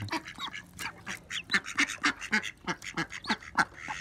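Chickens giving many quick, short calls while pecking at roti soaked in a plastic bowl of water, with sharp little ticks among the calls.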